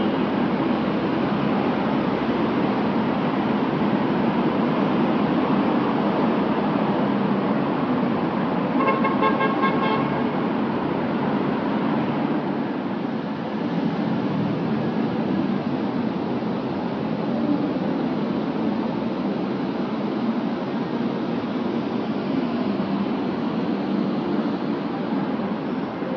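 Steady city traffic noise, with a brief car horn about nine seconds in.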